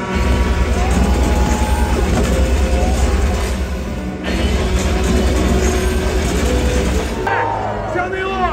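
A stunt boat's engine running loud as the boat speeds through the water, under loud show music. The sound breaks off briefly about halfway and again near the end.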